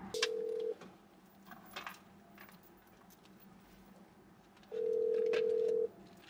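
Phone ringback tone of an outgoing call: a steady low tone sounding twice, a short ring near the start and a longer one near the end. The second ring cuts off abruptly as the call is answered.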